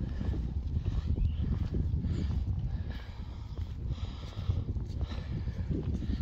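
Wind buffeting the phone's microphone as an irregular low rumble, with faint footsteps on paving from the person walking.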